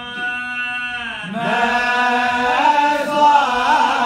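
A single man's voice chanting Arabic in a melodic Islamic devotional style: a long held note for about the first second, then a new phrase that rises and winds through ornamented turns.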